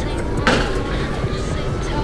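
A metal plate going onto an open oven's rack: a single clink about half a second in, over steady low kitchen noise.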